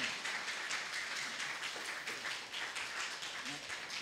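A congregation applauding: many people clapping their hands at a steady level, with a few voices among them.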